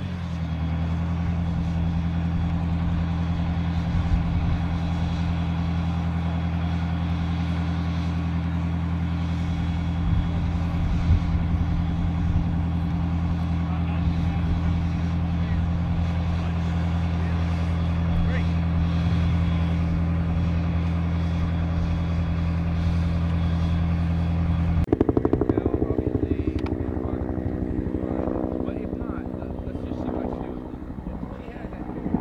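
Large military truck's engine idling steadily, a deep even drone. About 25 seconds in it cuts suddenly to a helicopter flying overhead, loud at first and then fading.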